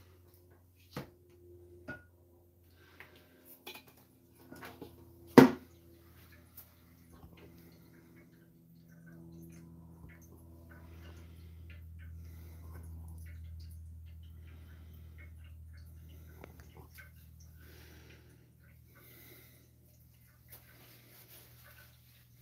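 A few light clicks and one sharp knock, then a low steady electric hum that builds up through the middle: the small pump that circulates ice water from the water bath through the Allihn condenser being switched on and running.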